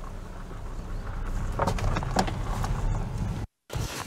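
A car's engine running as the BMW X1 moves off, a steady low rumble that grows slightly louder, with a few light crackles. It cuts off suddenly near the end.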